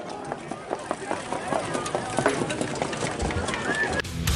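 Indistinct background voices with scattered clicks and knocks, and a low rumble coming in near the end.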